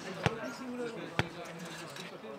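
A nohejbal ball bounced twice on the clay court, two sharp knocks about a second apart, with faint voices behind.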